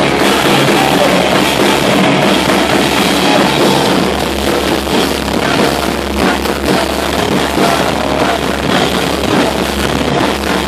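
A live rock band playing loud and without a break: electric guitar and drum kit.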